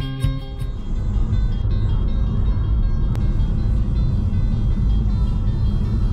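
Plucked guitar music ends in the first second, then a car is heard driving at road speed from inside the cabin: a steady low road and engine rumble, with a single click about three seconds in.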